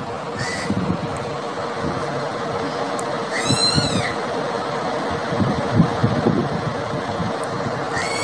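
Steady road rumble, rattle and wind noise of a ride in an open-sided passenger rickshaw, with a constant faint hum running under it. About three and a half seconds in, a brief high warbling chirp cuts through.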